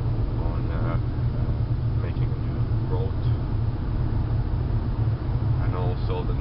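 Steady low rumble of a car's engine and road noise heard inside the cabin while driving at highway speed, with a few brief faint voice sounds in the first few seconds.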